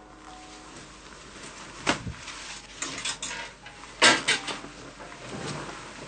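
Clothes being pulled off and flung about: several quick, sharp fabric swishes and knocks at irregular times, the loudest about four seconds in.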